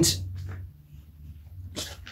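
A man's short voiced sound at the start, breaking off into a pause, then a quick sharp breath or sniff just before he speaks again.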